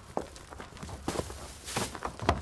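Footsteps, then a crackling rustle of plastic bags in the second half as rubbish is dropped into a bin-bag-lined dustbin.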